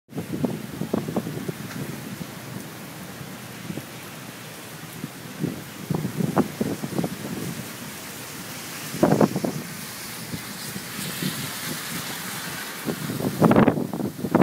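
Heavy hurricane rain pouring down in a steady hiss, with irregular gusts of wind buffeting the microphone in low rumbles. The downpour grows heavier near the end, closing with a loud gust.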